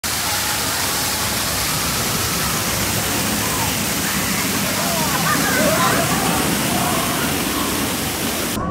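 Water from an artificial rock waterfall falling and splashing steadily, with people's voices faintly heard over it about halfway through.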